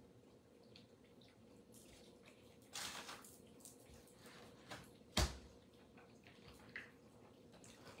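Faint chewing and mouth sounds from someone eating a burrito. A short rustle comes about three seconds in, and a single sharp knock a little after five seconds is the loudest sound.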